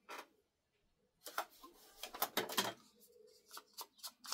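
Paper rustling and small clicks and taps of craft supplies being handled on a cutting mat. It starts with a brief rustle, then pauses for about a second, and then comes in scattered short bursts.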